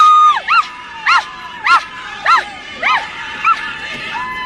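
High-pitched yelping calls: one long held cry, then about six short yips that each rise and fall in pitch, spaced a little over half a second apart, growing weaker toward the end.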